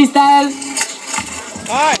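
An announcer shouting "Oh!", then a long rising-and-falling "Oh!" near the end. In the quieter middle, a few sharp clacks of a skateboard tapping on asphalt.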